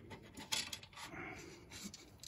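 Faint metal handling sounds as the sway bar link nut is worked off its threaded stud by hand: a few small clicks and light rubbing of metal on metal.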